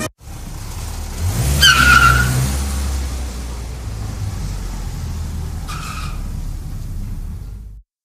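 Car sound effect: an engine running steadily, revving up with a tyre squeal about one and a half seconds in and a shorter squeal near six seconds, then cutting off suddenly just before the end.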